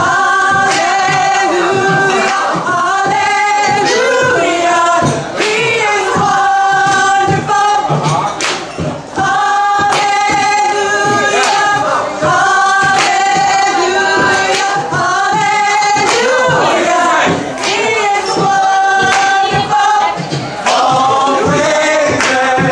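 A cappella gospel group of men and women singing held chords in harmony, with beatboxed percussion into a microphone keeping a steady beat.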